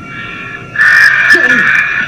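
A harsh, distorted screech comes in suddenly and loud about three-quarters of a second in and holds, over a steady high electronic tone.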